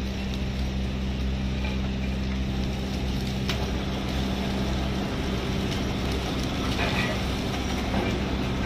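Steady low mechanical hum of heavy machinery in a sugar factory's cane-unloading yard, with a single sharp click about three and a half seconds in.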